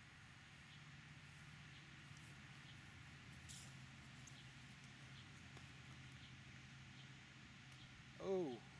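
Near silence: faint outdoor background with a steady low hum.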